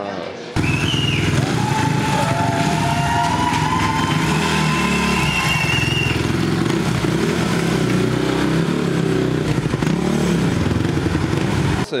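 Motorcycle engine held at high revs during a burnout, starting abruptly about half a second in and running until just before the end, its pitch wavering as the throttle is worked. A high squealing whine rides over it for the first few seconds.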